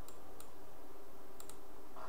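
A few sharp computer-mouse clicks: one about half a second in, then a quick pair about a second and a half in, over a steady background hiss.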